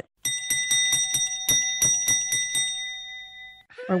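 A bell struck rapidly over and over, about five strikes a second, then left to ring and fade out.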